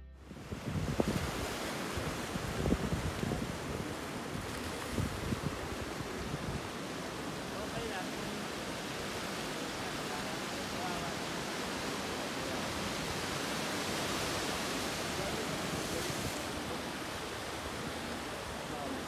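Sea surf washing and breaking over rocks, a steady rushing noise. Wind buffets the microphone with low thumps through the first several seconds.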